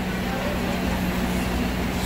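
Small hermetic refrigeration compressor of a reach-in cooler's condensing unit running steadily, just after start-up, with a constant low hum.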